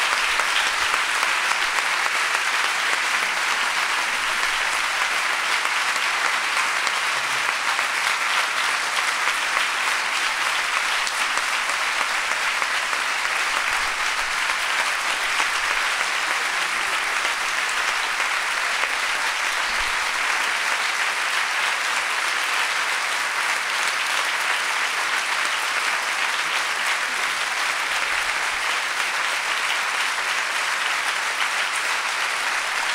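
A large indoor audience applauding steadily, dense clapping that keeps an even level throughout.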